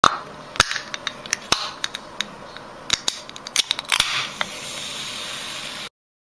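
Aluminium soda can's pull tab clicking again and again, sharp irregular clicks as fingers flick and pry at it, then a hiss about four seconds in as the can's seal breaks and the cola fizzes.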